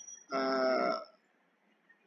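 A man's voice holding one drawn-out hesitation sound, a steady 'umm' or 'aah', for under a second, then near silence.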